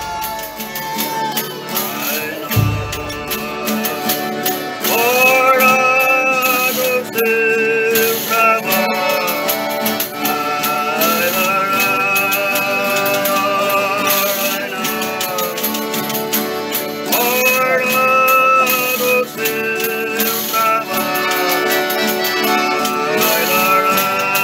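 Folia de reis singing: several male voices in long held notes, a new phrase starting about every six seconds, backed by acoustic guitars, an accordion and tambourines (pandeiros).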